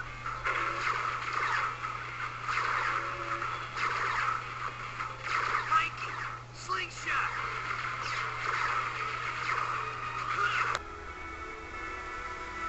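Cartoon soundtrack of music and indistinct voices over a steady low hum; the hum cuts off abruptly near the end as the scene changes.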